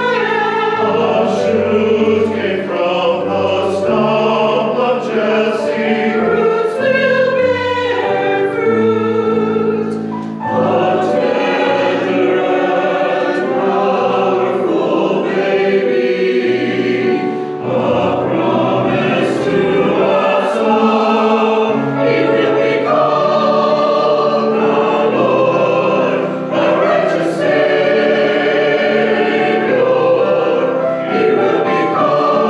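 Mixed church choir singing an anthem, with short dips between phrases about ten, seventeen and twenty-six seconds in.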